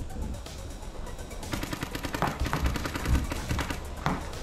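Paintball markers firing rapid strings of shots, a fast run of sharp pops that grows denser about halfway through.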